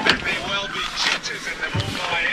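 Indistinct voices of people talking, with a sharp click right at the start.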